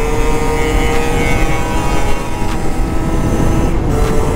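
Stock 50cc two-stroke dirt-bike engine running at steady, high revs while riding, its pitch holding level. Wind buffets the helmet camera's microphone.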